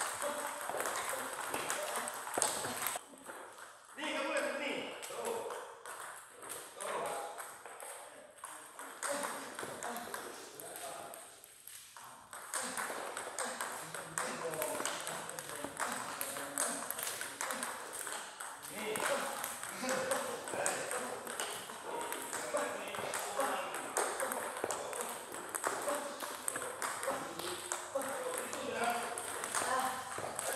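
Table tennis balls being struck by paddles and bouncing on the table in quick succession during practice hitting, a steady stream of sharp clicks with brief lulls a few times.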